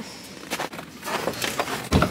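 Footsteps and rustling of clothing and camera handling, then a single low thump near the end.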